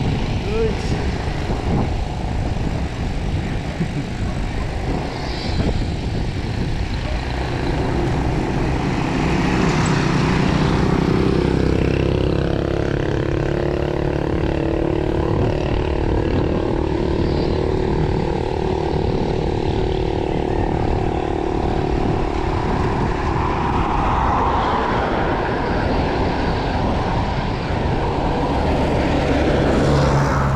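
Wind buffeting the microphone of a handlebar camera on a moving bicycle, with a motor vehicle's engine droning as it passes from about eight seconds in, fading after about twenty seconds.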